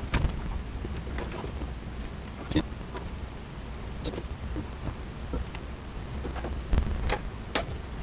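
Wires and small connectors being handled under a car's dash: scattered light clicks and rustles, about five in all, over a low steady rumble.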